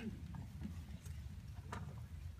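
Low room rumble of a hall with a few soft, irregular knocks, like high-heeled footsteps on a wooden stage.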